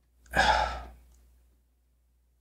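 A man's single audible breath into a close studio microphone, about a quarter of a second in and lasting under a second, taken in a pause between phrases of speech.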